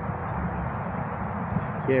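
Steady rumble of distant highway traffic, with no breaks or single events standing out.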